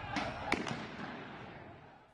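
A sharp shot about half a second in, after a fainter crack near the start, its echo dying away over the next second and a half: gunfire as security forces move on protesters in the street.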